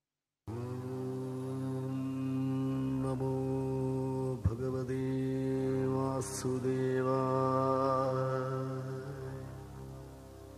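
Devotional chanting intro: a voice intoning long held notes over a steady drone, with a few brief slides in pitch, starting after a moment of silence and fading near the end.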